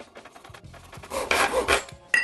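Small hand saw cutting a thin oak strip to length: a few rasping strokes, faint at first and louder in the second half.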